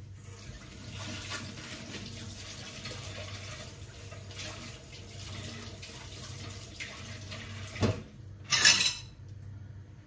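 Kitchen tap running into a stainless steel sink while something is rinsed under the stream. Shortly before the end there is a knock, then a short, loud clatter, after which the water sound drops away.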